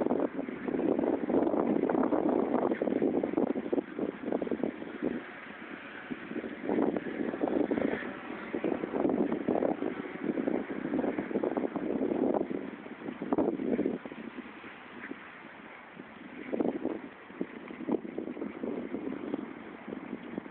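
Wind buffeting a phone's microphone in uneven gusts, strongest in the first few seconds and fainter later.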